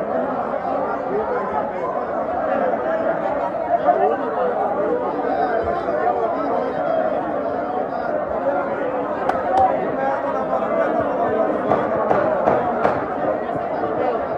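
Many people talking at once in a large reverberant chamber, a continuous crowd chatter with no single voice standing out. A few brief sharp clicks come through about nine seconds in and again a few seconds later.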